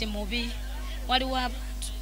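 Speech only: a woman talking into a handheld microphone, in two short phrases with a pause between.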